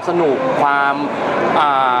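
Speech only: a man talking in Thai, drawing out one syllable for about half a second, over steady background noise.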